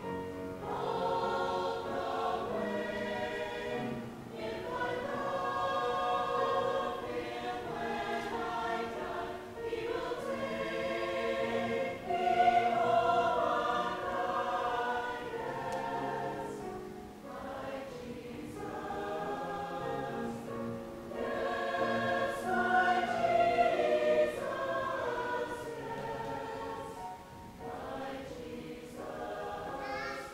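Mixed-voice church choir of men and women singing together in a series of phrases, with short breaks between them.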